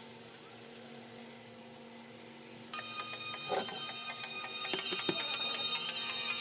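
Quiet room tone with a faint steady hum, then nearly three seconds in a smartphone's built-in speaker starts playing electronic music, thin and tinny at low volume, with a few light taps of handling.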